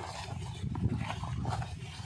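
Taped cardboard box being torn and crumpled open by hand: an irregular rough rustling and tearing.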